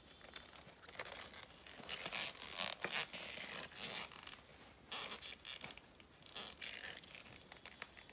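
Nylon webbing strap of a tree-climbing gaff being pulled through its buckle and cinched tight around a boot, in a series of short pulls about a second apart.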